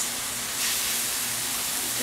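Chicken thigh pieces sizzling steadily as they brown in a hot frying pan.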